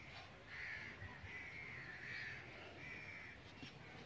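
Faint bird calls: about four drawn-out, caw-like calls in succession.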